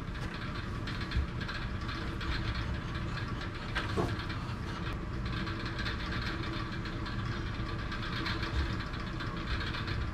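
A small engine running steadily for powering the job-site tools, with a few short sharp knocks as a pneumatic nail gun is fired into the wooden door framing.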